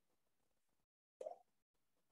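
Near silence, broken by one short, soft pop a little over a second in.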